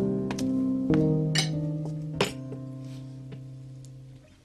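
Background score of plucked acoustic guitar: a last chord struck about a second in rings out and slowly fades away. A few light clinks of tea glasses and dishes come over it.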